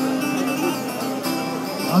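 Background music with a steady held note.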